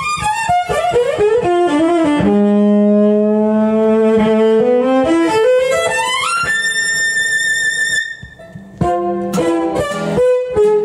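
Fiddle playing a dance tune over acoustic guitar accompaniment: a run of quick notes, then a long held low note that slides up into a long held high note, a brief dip just after eight seconds, and quick notes again near the end.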